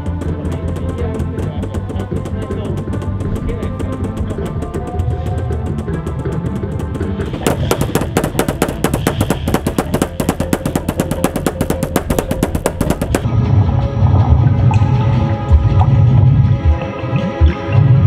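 Music plays throughout. From a little before halfway, a fast, even run of sharp percussive clicks lasts several seconds; then a heavier, louder bass comes in for the last few seconds.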